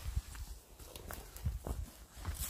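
Footsteps on a mossy forest floor: soft, irregular thuds underfoot with light crackles of twigs and dry litter.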